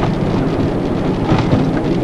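Steady road and engine noise inside a moving car's cabin, with the windshield wipers sweeping and a brief knock about a second and a half in.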